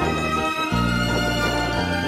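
Instrumental background music: held chords over a low bass line that moves to a new note about every second.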